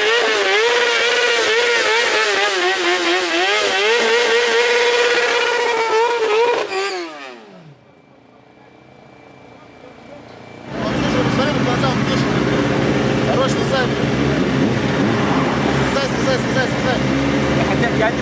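Sportbike engine revving hard and held high, its pitch wavering up and down, then the revs falling away about seven seconds in. After a brief lull, a steady mix of idling motorcycles and voices follows.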